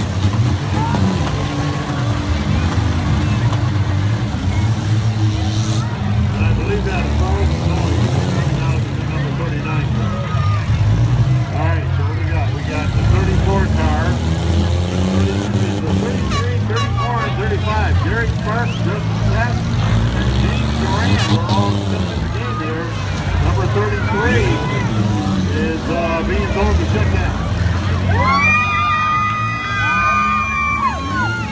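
Small four-cylinder and V6 demolition derby cars running and revving on a dirt track, with occasional crashes, over a crowd shouting and cheering. A steady horn-like tone sounds for about two seconds near the end.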